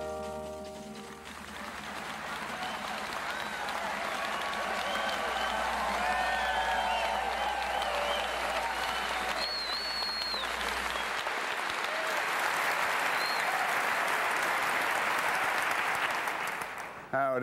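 A studio audience applauding, with cheering voices rising above the clapping. The applause builds over the first few seconds and carries on steadily until it fades near the end. The tail of brass theme music dies out at the very start.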